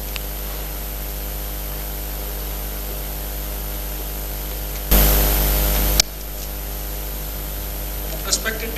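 Steady electrical mains hum and hiss from the sound system, with a loud burst of static about five seconds in that lasts about a second and cuts off with a click.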